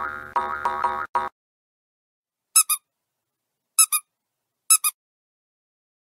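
Intro sound effects over a title card: a short pitched musical jingle lasting just over a second, then three quick high double chirps spaced about a second apart.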